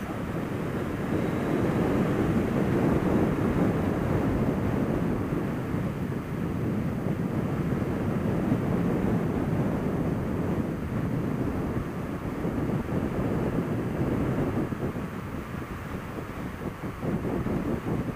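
Wind rushing over the microphone of a moving Suzuki SFV650 Gladius motorcycle, with the bike's running V-twin engine and road noise mixed in underneath. The rushing is steady, easing a little near the end.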